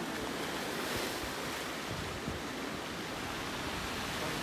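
Ocean surf breaking and washing over rocks, a steady rush.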